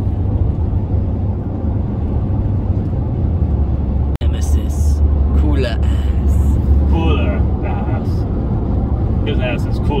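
Steady low road rumble and tyre noise inside a Toyota Prius cabin at highway speed, cutting out for an instant about four seconds in, with voices in the car over it in the second half.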